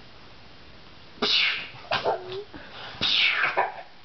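A toddler's breathy, excited vocal bursts while bouncing: two loud huffing squeals about a second apart, with a short voiced coo between them.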